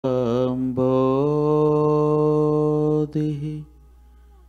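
A man chanting a Sanskrit invocation in a low voice, holding one long steady note for about two seconds, then a short phrase, stopping just before the end.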